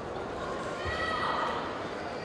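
One long, high-pitched shout from a person in the arena crowd that rises and then falls, over the steady murmur of a large hall.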